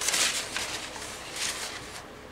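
Brown pattern paper rustling as the sheets are lifted and unrolled by hand, in two short bursts: one at the start and another about a second and a half in.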